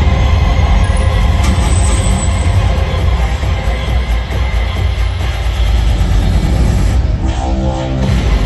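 Loud music with heavy bass playing over an arena's sound system. Near the end it changes to a quick pulsing pattern.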